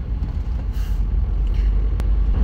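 Steady low rumble of a car cabin, from the engine and road, with a brief hiss a little under a second in.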